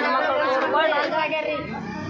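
A woman's voice speaking, with other voices chattering behind.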